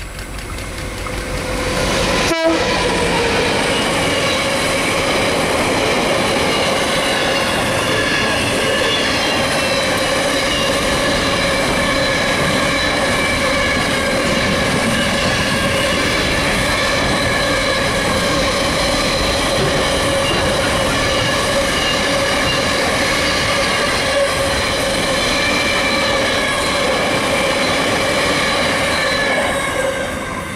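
Diesel freight train passing close by: the Q-class locomotive's engine builds up over the first two seconds, with one sharp knock as it goes by, then a long string of loaded wagons rolls past with a steady rumble and a continuous high-pitched ringing squeal from the wheels on the rail, dropping away right at the end.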